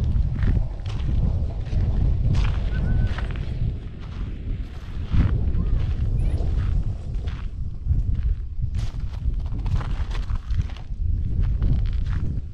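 Footsteps of a person walking over dirt and grass, irregular soft steps, with wind rumbling on the microphone.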